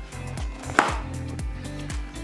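Background music with a steady low beat and sustained notes, and a single sharp click a little under a second in.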